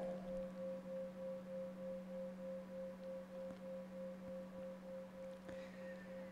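A faint, steady hum of two held tones, one low and one higher, pulsing slightly about twice a second.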